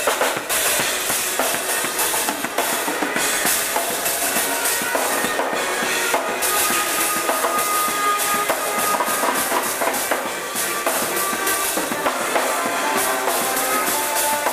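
Live band music driven by a drum kit, with steady bass drum, snare and cymbal strikes and a few held notes from other instruments underneath.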